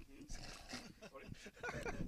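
Faint talk from people's voices away from the microphones, strongest near the end.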